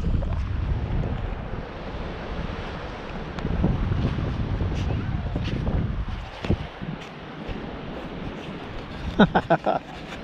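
Wind noise on a camera microphone, a low rushing haze that is strongest at the start and again for a couple of seconds in the middle. A short bit of voice comes near the end.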